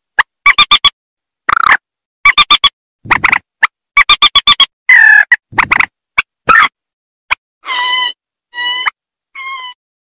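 Bird-lure recording of rail (burung mandar) calls, adults and chicks: loud, harsh calls in quick clusters of short notes, then near the end three fainter, clearer, longer notes.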